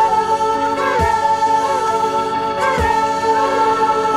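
Late-1960s British psychedelic pop recording: a long held note sung in vocal harmony over a steady band backing, without distinct words.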